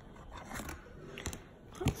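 A few light clicks and taps of hard plastic from a clear plastic fish tub and its lid being handled.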